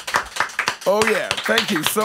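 Hand clapping from a small group in a small room, greeting the end of a song, with a man's voice over it.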